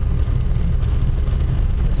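Steady low rumble of a moving vehicle driving along a wet road: engine and road noise with no break.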